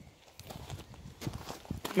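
Handling noise as a spiny cactus cutting is gripped with metal tongs and lifted out of a cardboard box packed with styrofoam: a few light, scattered knocks and scrapes starting about half a second in.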